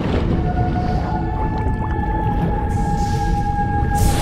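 Underwater sound design from the film trailer's score: a deep, steady rumble with a long held high tone over it. The tone enters just after the start, steps up slightly in pitch about a second in, and then holds.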